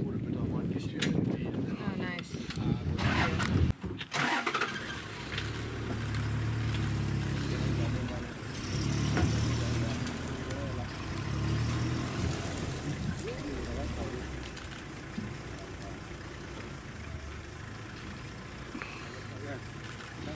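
Safari game-drive vehicle's engine starting about four seconds in, after a few knocks, then running at low revs as the vehicle is eased to a new viewing position.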